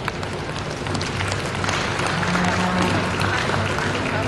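Audience applauding, over a steady low hum.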